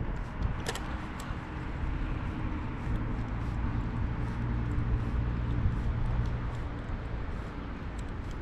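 A steady low rumble with a faint hum, like a distant motor, under a few light clicks.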